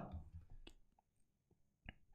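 Near silence with a few faint keyboard clicks, the last one, near the end, the loudest.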